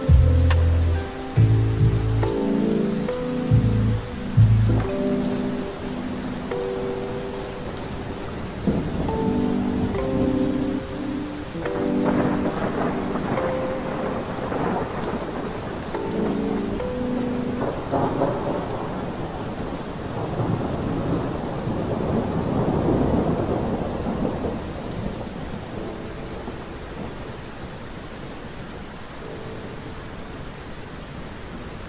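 Steady rain recording under soft lo-fi music: mellow keyboard chords, with deep bass notes that stop about five seconds in. A long roll of thunder swells through the middle and dies away, and the music thins out near the end.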